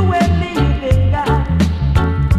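1980s roots reggae track playing: a heavy bass line under a steady drum beat, with a pitched melody line above.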